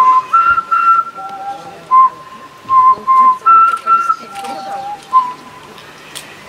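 A woman whistling into a microphone: a slow tune of clear, short held notes that step between a few pitches, with small upward slides into some of them and brief gaps between.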